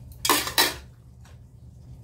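Metal spoon and chopsticks clattering against a metal soup pot: two quick clinks under a second in, then a few faint small clicks.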